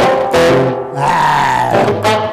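Electric guitar, a Stagg super-strat-style solid body, played through an amp: a struck chord, then about a second in a held note bent up in pitch and let back down, before fast riffing picks up again near the end.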